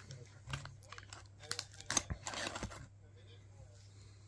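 Handling noise as pliers are drawn out of a nylon tool pouch: fabric rustling and a few light clicks of metal tools. The longest, scratchiest rustle comes about halfway through.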